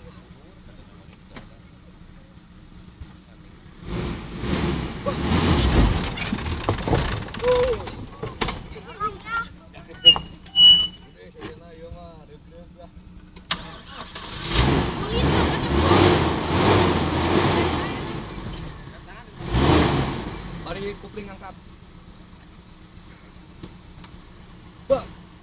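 Daihatsu Feroza 4x4 engine pulling the vehicle slowly over a rutted dirt track, rising in three loud surges of throttle between quieter stretches of idle.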